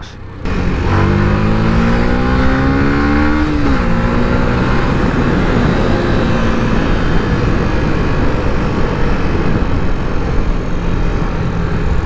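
Yamaha YZF-R125's single-cylinder four-stroke engine, heard from on the bike, accelerating with its pitch rising for about three seconds, then dropping at a gear change about four seconds in, and running on steadily under loud wind rush.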